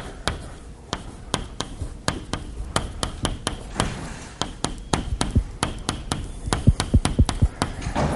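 Chalk tapping on a blackboard while writing: a run of irregular sharp taps over a low hum, thickest about six to seven and a half seconds in.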